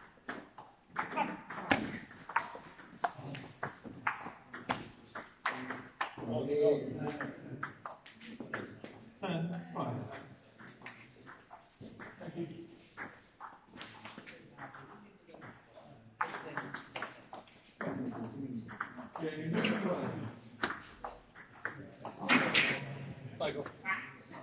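Table tennis ball being hit back and forth in rallies: a quick series of sharp clicks as the ball strikes the bats and bounces on the table.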